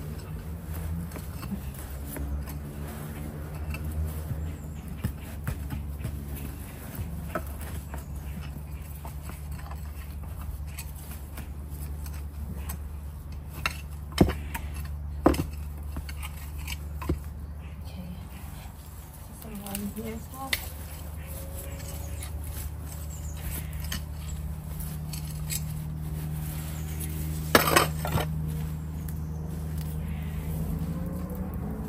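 A hand fork scraping and digging compost out of the bottom hatch of a plastic compost bin, with scattered scrapes and a few sharp knocks as the tool strikes, twice close together in the middle and once near the end. A steady low hum runs underneath.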